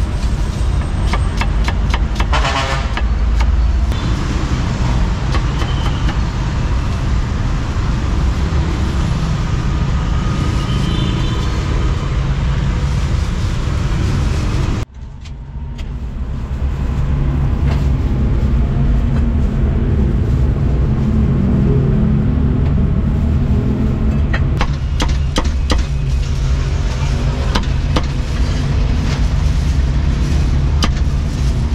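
Steady road traffic noise with rapid cleaver strokes on a wooden chopping block, at the start and again in the last few seconds. The sound drops out briefly about halfway through.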